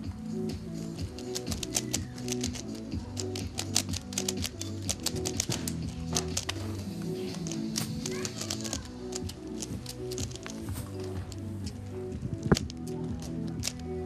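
Rapid, irregular clicking of plastic 3x3 Rubik's cubes being turned fast during a timed speedsolve, in flurries, with one sharper knock near the end. Background music plays under the clicking.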